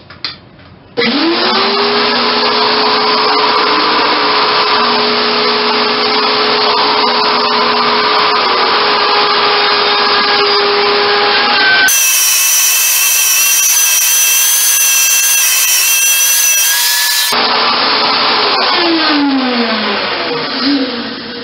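Wood router in a router table switched on about a second in, spinning up to a steady whine and cutting wood as the blank is turned on a circle-cutting pivot pin. Near the end the motor winds down with a falling whine.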